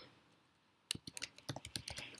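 Typing on a computer keyboard: a quiet first second, then a quick run of about a dozen keystrokes.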